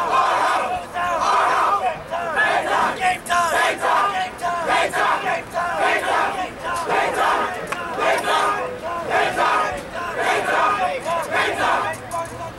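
A group of young football players shouting and chanting together in a tight team huddle, many voices at once in loud pulses about once a second.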